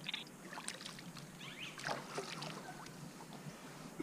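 Water splashing and sloshing at the side of a boat as a large fish is released by hand, in several short, fairly faint splashes.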